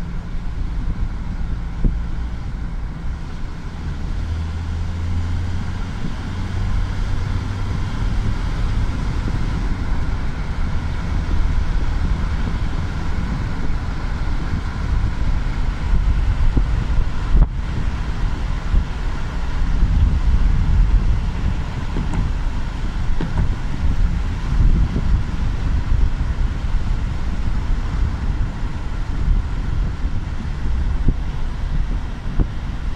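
A car driving along a road, heard from inside: steady engine and road rumble with wind buffeting the microphone.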